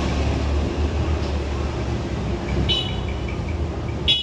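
Steady low rumble of road traffic, with a brief high-pitched beep about three quarters of the way through.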